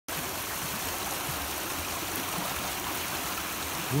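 A fast-running stream: a steady, even rush of water moving rapidly over rocks.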